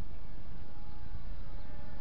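XK K120 micro RC helicopter in idle-up, its brushless motor and rotors giving a faint thin whine that holds a steady pitch, under a steady rush of wind on the microphone.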